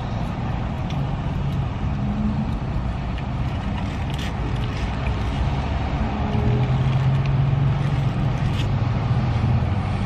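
Steady low hum of a parked car's idling engine heard inside the cabin, a little louder in the second half. A few faint clicks fall over it, one about four seconds in and another near the end.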